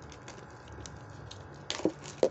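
Faint handling noise of hands on a small cardboard box and its loose plastic wrap: scattered light clicks and rustles, with one louder handling sound near the end.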